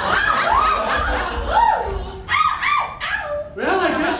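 A performer's voice making a run of short wordless calls, each rising and falling in pitch, with brief breaks about two seconds in and again near the end.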